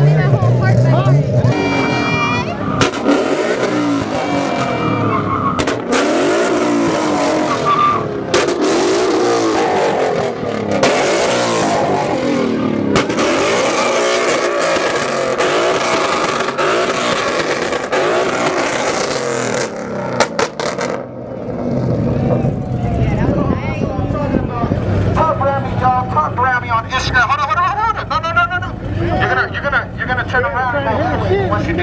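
A performance car engine revving hard in repeated bursts against a two-step launch limiter, with sharp bangs every couple of seconds. About twenty seconds in it drops to a steady idle.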